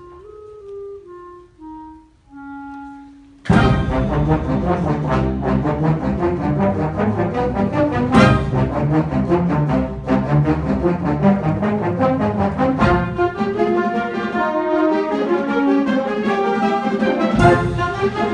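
Youth wind band playing: a quiet, falling solo line for about three seconds, then the full band comes in suddenly and loudly, brass and woodwinds together in a dense, accented passage.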